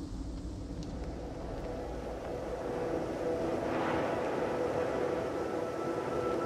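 Opening of an ambient music track: a low, noisy rumbling drone that slowly swells, with a few soft held tones fading in about halfway.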